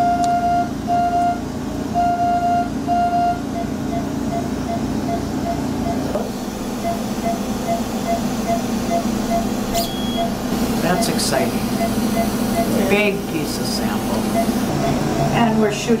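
Patient-monitor beeping in an operating room. There are four longer beeps in the first three seconds, then quick regular beeps about three to four a second, in step with the anaesthetised patient's heartbeat. A steady machine hum runs underneath, and faint voices come in during the second half.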